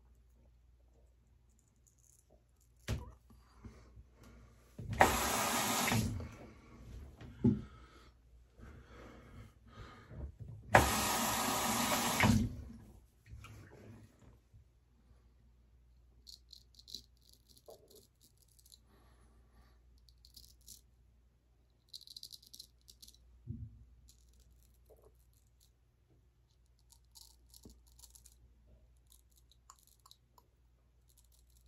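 Gold Dollar straight razor scraping through lathered stubble on the upper lip in short strokes, heard as faint fine crackling in the second half. Earlier, two loud rushing bursts of about a second and a half each come about five and eleven seconds in.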